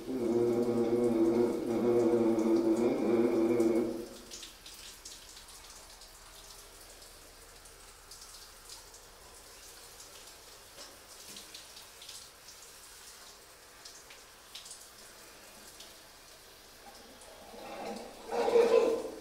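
Trumpet playing held notes in a small tiled bathroom for about four seconds, then stopping. After that there is only faint room hiss with a few small clicks and rustles.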